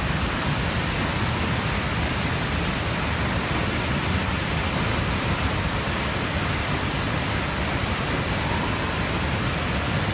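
Large waterfall pouring onto a rocky road: a steady, even rush of falling water.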